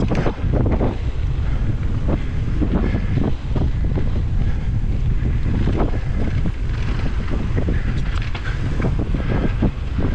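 Heavy wind buffeting on the camera microphone of a mountain bike riding fast down a dirt trail, mixed with frequent short clatters and knocks as the bike rolls over bumps.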